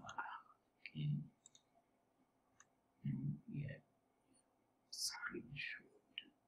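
A few faint, separate computer mouse clicks while a screenshot is set up with the Snipping Tool, between short stretches of quiet muttered speech.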